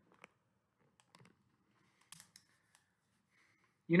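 A few faint, scattered clicks and ticks in a quiet room, the loudest cluster a little after two seconds in.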